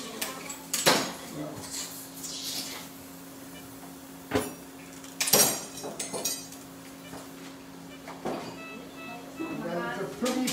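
Steel surgical instruments clinking and clattering against each other and a tray in a few sharp clanks, the loudest a little after five seconds in.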